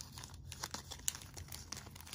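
Plastic wrapper on a pack of party invitations crinkling and tearing as it is pulled open by hand, in a run of small crackles with one sharper crackle about a second in.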